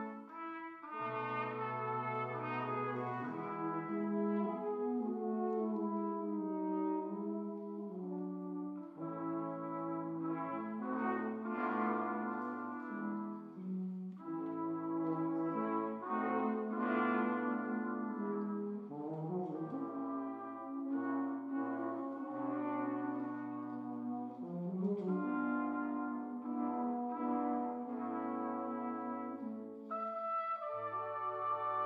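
Brass quintet on period instruments playing a 19th-century chamber piece in phrases. A cornet and an E-flat soprano flugelhorn lead over horn, trombone and a tuba-like bass brass holding low notes.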